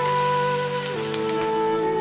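Water poured from a glass jug splashing into a wok of fried fish pieces and vegetables, over soft background music whose held notes change about halfway through.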